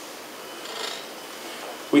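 Lecture-hall room tone in a pause between sentences, with a faint brief rustle a little under a second in. A man's voice starts again right at the end.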